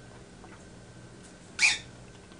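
A short slurp through a drinking straw, once, about one and a half seconds in.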